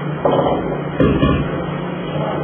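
A red steel LPG cylinder being handled and turned upside down, with two louder bursts of handling noise about a quarter second and a second in, over a steady low hum.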